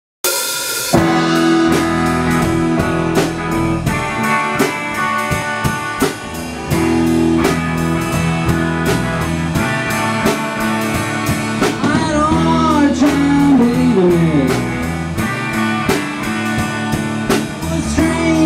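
A live rock band playing: a drum kit keeping a steady beat, electric guitar, and organ holding sustained chords.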